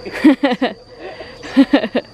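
A person laughing in two short bursts about a second apart, over a faint steady high chirring of insects.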